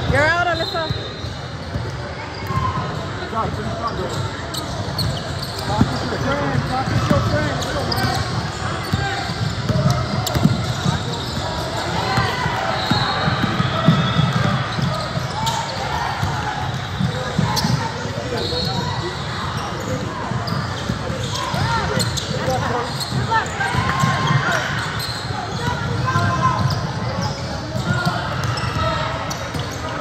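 A basketball bouncing on a hardwood gym floor during play, repeated short thuds over the indistinct voices of spectators, in a large echoing gym.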